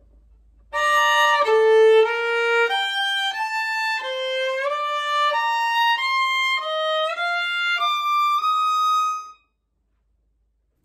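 Violin playing a fast passage at a deliberately slow tempo, about a dozen evenly held bowed notes stepping up and down: slow practice to check intonation. The notes start about a second in and stop suddenly near the end.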